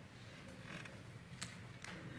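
Faint handling sounds at an altar: a soft scrape, then two sharp clicks about half a second apart, as the communion vessels and host are handled, over low room hum.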